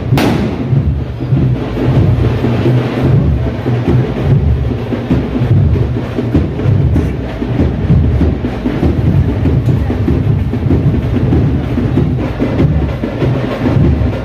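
Loud drum music with a heavy bass drum beat, and a sharp firecracker bang right at the start.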